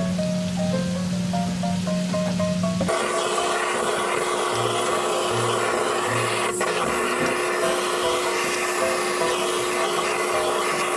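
Background music with a stepping melody. About three seconds in, a steady hiss of a handheld butane blowtorch flame starts and runs on under the music while it scorches smoked duck in a wok.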